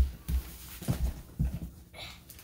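A child handling a large canvas gift sack on a wooden floor: four or so dull, low thumps at uneven intervals as the sack and its contents bump the floor and the child's feet move.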